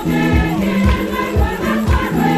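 Lively church choir music: voices singing together over a bass line, with a steady beat of about two thumps a second.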